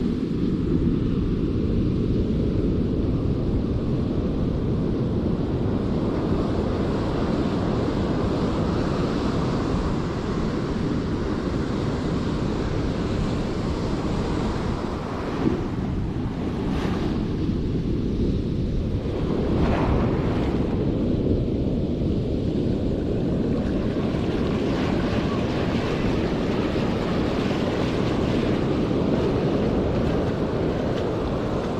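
Surf breaking and washing around the angler's feet, under heavy wind noise on the microphone. One brief sharp click is heard about halfway through.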